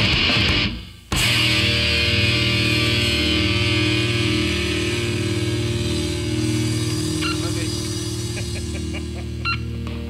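Distorted electric guitar through an amplifier: a short loud noisy burst that cuts off, then a chord struck about a second in and left ringing, slowly fading. A few faint clicks of string or handling noise come near the end.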